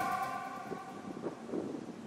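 The last held notes of background music die away over about the first second, leaving faint wind on the microphone and choppy river water.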